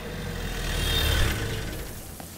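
An SUV's engine as it drives in, a low rumble that swells to its loudest about a second in and then dies away.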